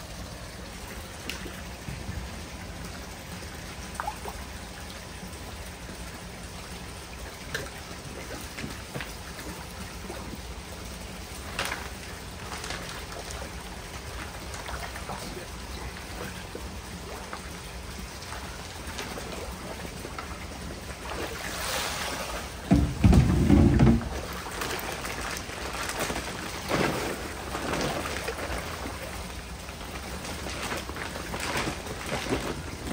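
Pond water splashing and trickling against a steady wash of water noise as hands work koi bags and a floating basket in the pond. There are scattered small splashes, and a loud low rumble about 23 seconds in.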